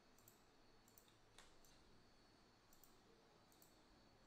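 Near silence, broken by about five faint computer mouse clicks.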